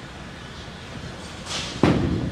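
Bowling-centre room tone, then near the end a short hiss and a single heavy thud as the bowling ball is released and lands on the lane.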